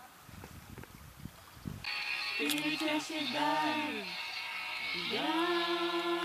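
Faint low noise, then about two seconds in people start singing a song together, with long held notes that slide between pitches.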